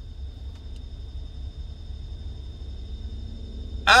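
Low, steady rumble inside a car's cabin, with a faint steady high-pitched tone over it.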